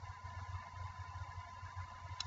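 Faint background noise of the recording: a low, fluttering hum with a thin steady tone above it and light hiss, and no distinct sounds.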